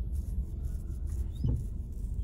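Steady low rumble of a car's engine and tyres heard inside the cabin while it creeps along in slow traffic, with a brief low voice sound about one and a half seconds in.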